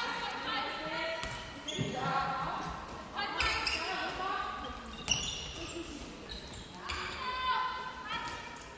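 Indoor handball play in a sports hall: shoes squeaking on the hall floor in short high-pitched squeals, the ball bouncing with sharp knocks, and players' voices calling out.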